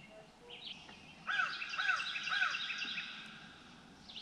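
Wild birds singing by a wooded lake: scattered short chirps, then a louder run of about five quick arching notes from about a second in, lasting a second and a half.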